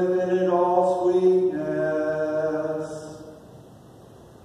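A man's voice chanting a slow hymn in long held notes, stepping down to a lower note about halfway through; the phrase fades out near the end.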